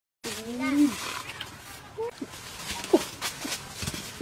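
A woman's voice exclaiming in the first second, rising then falling in pitch, then a few short sliding vocal sounds with faint clicks between them.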